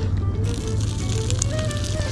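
Background music with steady held notes, over water pouring from a pot of pasta drained through a strainer lid, a hiss starting about half a second in.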